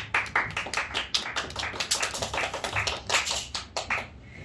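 Small audience applauding, the individual claps distinct, thinning out near the end.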